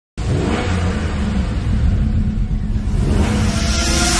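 Sound effect of a car engine revving, its pitch gliding up and down over a low rumble, with a rising whoosh near the end.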